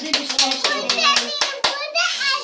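Several people clapping their hands, quick and uneven at about six claps a second, with a child's voice held on one note through the first part.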